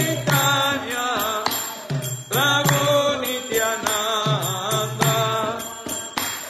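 Devotional kirtan: voices singing a Vaishnava chant in held, gliding phrases, with a jingling percussion keeping time.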